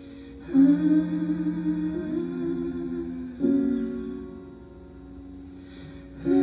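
Solo live song: a woman singing long held notes with vibrato over upright piano chords. The chords are struck about half a second in and again a little past the middle, each left to ring and fade.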